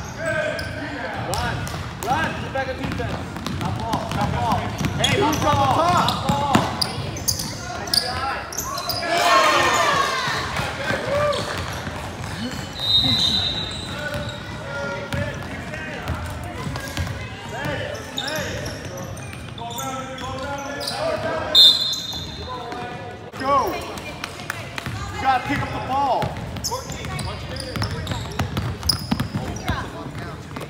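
A basketball dribbling on a hardwood gym floor, with players' and spectators' voices echoing around the hall. There are two brief high-pitched squeaks, about halfway through and again some eight seconds later.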